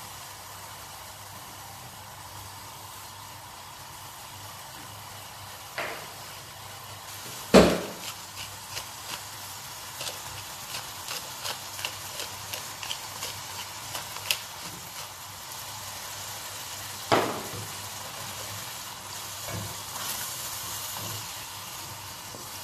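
Pot of tomato and seafood soup with baby octopus and cuttlefish sizzling over the heat in a large aluminium pot, stirred with a wooden spoon. A steady hiss runs throughout, with a few sharp knocks, the loudest a little over seven seconds in, and light ticks of the spoon in between.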